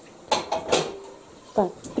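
Dishes and cutlery clinking and clattering as they are washed at a kitchen sink: a few quick strikes in the first second, one ringing briefly. A short bit of a voice follows near the end.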